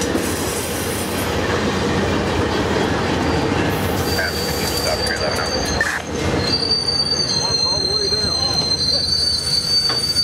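Amtrak passenger coaches rolling past at low speed as the train pulls into a station, a steady rumble of wheels on rail. From about four seconds in, high-pitched squealing joins in, held and stepping in pitch, as the train brakes to a stop.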